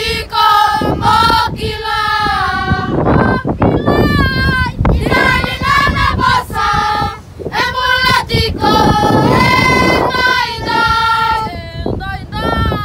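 A group of children singing together, in sung phrases one after another.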